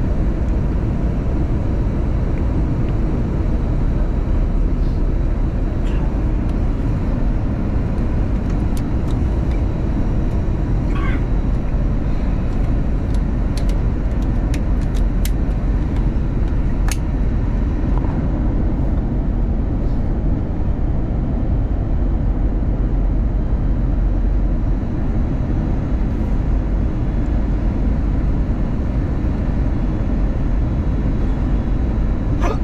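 Steady cabin roar of an Airbus A321 descending on approach, engine and rushing-air noise heard from a front-row window seat, deep and unchanging in level. A few faint ticks sound near the middle.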